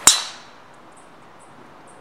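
A golf club striking a golf ball in a full swing: one sharp, loud crack right at the start, ringing away over about half a second.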